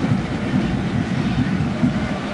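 Steady crowd noise from a stadium full of spectators: many distant voices blending into an even din, with no single sound standing out.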